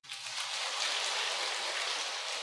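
A steady, even hiss like rain or running water that starts abruptly, with no voice over it.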